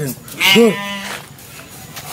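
A person's short wailing cry about half a second in, its pitch rising and then falling, sounding somewhat like a bleat.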